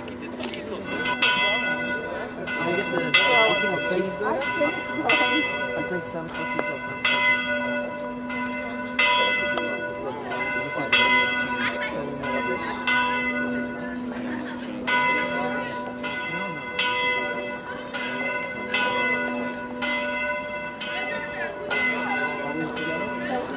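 Church bell ringing, struck about once a second, its steady hum carrying on between strikes.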